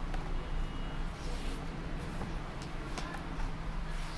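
Handling noise from a large comic book being opened: a few light rustles and taps over a steady low hum.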